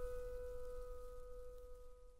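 The last piano chord of a slow ballad ringing out and fading away, a few steady held notes dying down.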